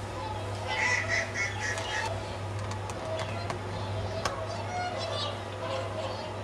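Whooper swans calling: a quick run of honking calls in the first two seconds, then scattered calls after, over a steady low hum.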